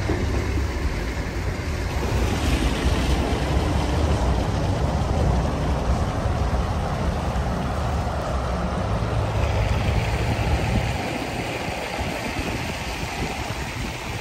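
Wind buffeting the microphone outdoors, a steady rushing noise with an uneven low rumble that eases about eleven seconds in.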